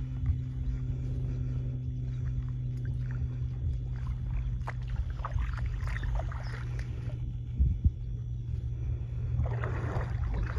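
Steady low hum of a small boat's motor running at low speed, after settling to a lower pitch at the start. There are two brief knocks about three-quarters of the way through.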